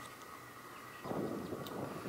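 Low room tone, then from about a second in a faint, steady outdoor background noise.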